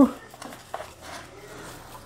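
Quiet handling of a small stack of baseball trading cards: a faint rustle of card stock with one light tap about three-quarters of a second in.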